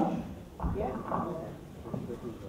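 Faint, indistinct talking, with a low bump from a handheld microphone being handled and set back on its stand.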